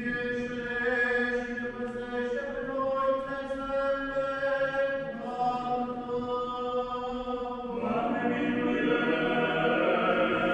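Eastern Orthodox church chant: long, sustained sung notes that step to a new pitch every two or three seconds.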